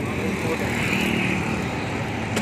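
Steady rush of road and engine noise from riding on a moving motorbike through city traffic.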